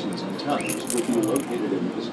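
Metal tags on a dog's collar jingling as the dog moves close by.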